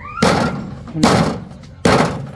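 A large knife chopping into a thick, fibrous banana stem on a wooden block: three sharp chops about a second apart, each with a short fading tail.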